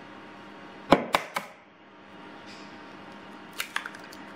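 An egg being cracked against the rim of a bowl: three sharp cracks about a second in, then a few lighter clicks near the end as the shell is handled.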